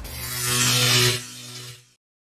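Electric buzz-and-crackle sound effect for a logo animation. A hissing crackle swells over about a second above a steady low hum, drops off sharply, then fades out.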